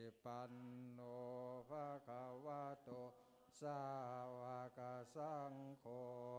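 Theravada Buddhist Pali chanting by male voices, held on a low, nearly level pitch in phrases of about a second with short breaths between.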